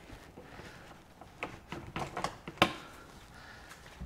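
A few short clicks and knocks from a caravan's exterior hatch latch being worked and the hatch opened, loudest about two and a half seconds in.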